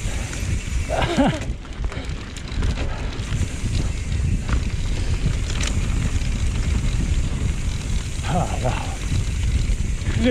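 Mountain bike rolling fast down a dirt trail, heard through an action camera's microphone as a steady low rumble of tyres and wind. A short vocal exclamation from the rider comes about a second in, and another near the end.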